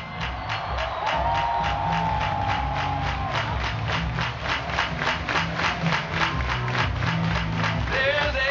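Live band music over a festival PA, heard from within the crowd: a beat with sharp drum ticks about four a second over a repeating bass line, and a long held note in the first few seconds.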